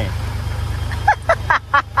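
Fire truck engine idling with a steady low rumble, and a man laughing over it from about a second in.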